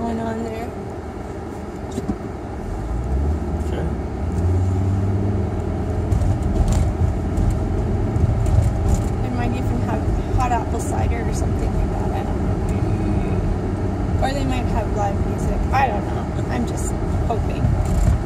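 Car engine and road noise heard inside the cabin, a steady low rumble that grows louder about three seconds in, as when the car picks up speed.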